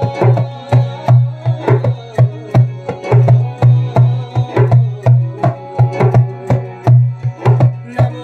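Djembe played with both hands in a steady, quick rhythm, about four to five strokes a second, mixing sharp slaps with deep, ringing bass tones.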